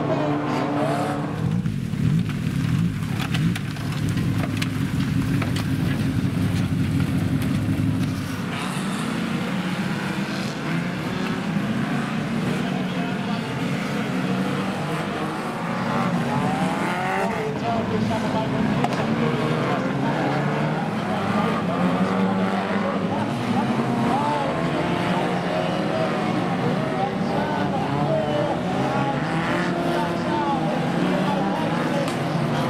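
Several banger racing cars' engines running and revving together, their pitch rising and falling. A loud low engine note dominates until about eight seconds in, after which many engine notes waver over one another.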